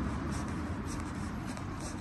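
Soft rustling and scuffing with faint small ticks, over a steady low outdoor rumble.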